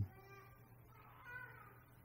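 Two faint, short high-pitched cries: one just after the start and a slightly longer one about a second and a quarter in.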